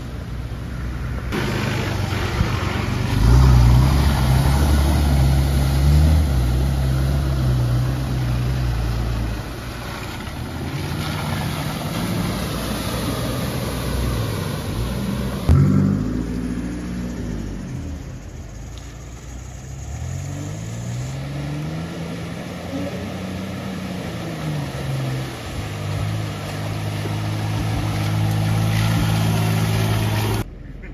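Four-wheel-drive engines revving as the vehicles push through deep mud holes, the revs holding steady and then rising and falling repeatedly in the second half. A sharp thump about halfway through.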